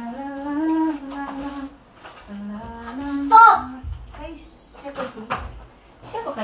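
A woman humming a slow tune with her mouth closed, in long held notes. About three seconds in, a brief loud high-pitched voice cuts in.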